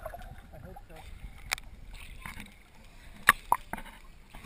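Lake water lapping and sloshing against a camera held at the surface, muffled as the camera dips underwater, with a few sharp clicks, the loudest a little over three seconds in.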